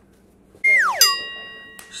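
Comic sound effect: a quick falling whistle, then a bright ringing 'ding' struck about a second in that fades away.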